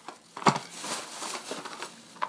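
A sharp tap about half a second in, then soft crinkling and rustling of plastic packaging as it is handled.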